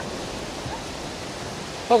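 Steady, even rushing noise of the outdoor background, with no distinct event in it.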